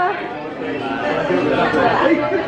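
Indistinct chatter of several people talking over one another in a room.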